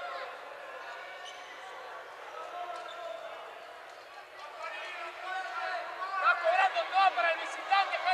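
Murmur of spectators and overlapping voices in a basketball gym, growing louder in the last few seconds.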